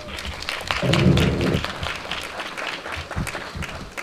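Audience applauding, many hands clapping, swelling loudest about a second in.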